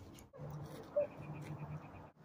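Faint animal calls: a single short call about a second in, then a quick run of evenly spaced high chirping notes.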